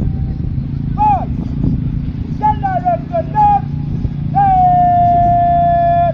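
A drill commander's shouted, drawn-out commands to a marching squad: short high-pitched calls about a second in and again around three seconds, then one long held call from about four and a half seconds in.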